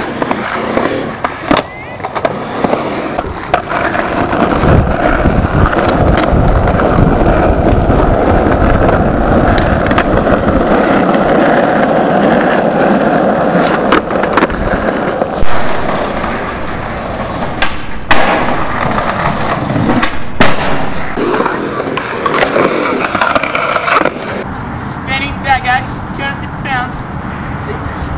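Skateboard wheels rolling on hard pavement, broken by several sharp clacks of the board being popped and landing on the ground during tricks.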